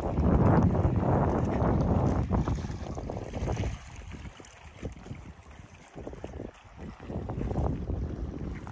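Wind buffeting the microphone in gusts: a rumbling rush that is strongest in the first few seconds, eases off about halfway through, and picks up again near the end.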